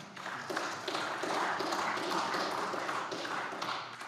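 Applause from members of a parliament chamber: a steady, dense patter of many hands clapping that begins to die down near the end.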